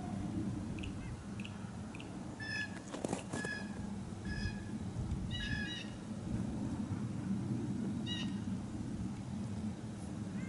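Bald eagle calling: short, high chirps, some with a slight arch in pitch, coming in several bunches, over a low steady rumble. A sharp click comes about three seconds in.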